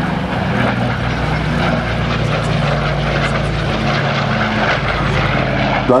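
Douglas DC-6 flying past, its four Pratt & Whitney R-2800 radial piston engines and propellers giving a steady, even drone.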